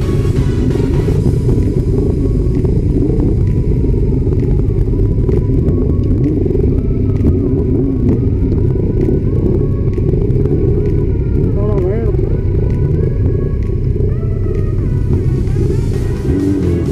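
Motorcycle engines running with a heavy low rumble, recorded on a bike-mounted camera, while music plays over it.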